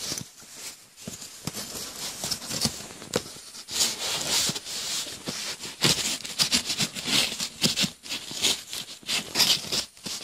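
Cardboard rustling, scraping and tearing in irregular scratchy bursts as the perforated tear strip of an Amazon cardboard mailer is pulled open and the card is handled.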